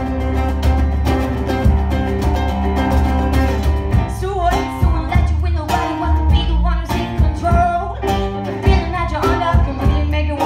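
Live band playing an upbeat song: a steady drum beat over bass and guitar.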